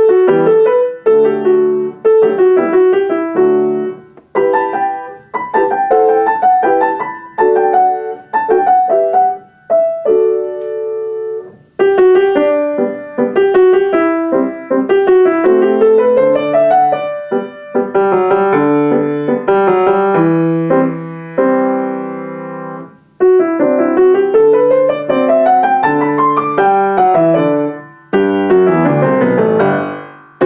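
Solo grand piano playing a light, lilting piece in short phrases with brief pauses between them. About three-quarters of the way through, a run of notes climbs up the keyboard, and near the end a quick run comes back down.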